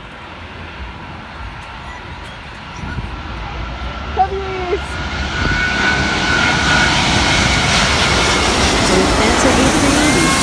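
An Airbus A380's four Rolls-Royce Trent 900 jet engines as the airliner passes low overhead on final approach. The noise swells from about three seconds in to a loud, steady rush with a high whine over it.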